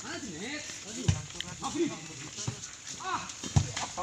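Volleyball being struck by hand during a rally: two sharp slaps about two and a half seconds apart, with a few lighter knocks, among players and onlookers calling out.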